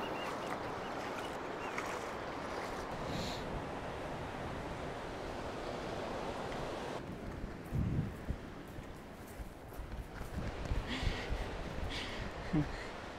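Steady wash of surf and shallow sea water. About seven seconds in it gives way suddenly to quieter wind buffeting the microphone in gusts.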